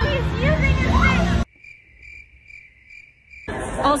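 A voice that is abruptly cut off, then about two seconds of a lone cricket chirping evenly, about three chirps a second, over near silence. It is an edited-in 'crickets' sound effect of the kind used to mark an awkward silence.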